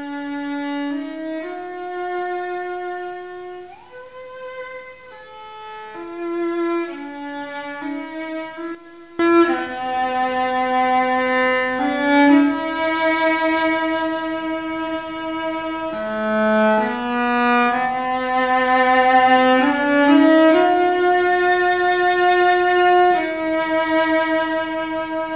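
Solo cello played with the bow, a slow melody of long held notes moving step by step; it grows louder and fuller about nine seconds in.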